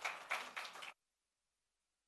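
A short stretch of sound from the hall cuts off abruptly about a second in, and the audio then drops to dead digital silence.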